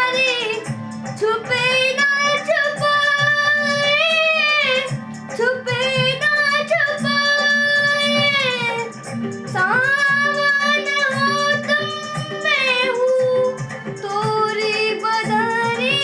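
A boy singing a Hindi semi-classical song solo, long held notes with wavering ornaments, in phrases that break for a breath every four to five seconds, over a low steady accompaniment.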